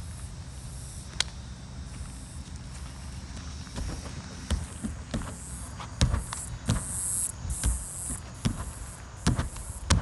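Bare hands and feet thudding on an inflated air track during a tumbling pass: a round-off into back handsprings. It comes as a quick series of soft thumps, about one every half second to second in the second half, over a steady low rumble.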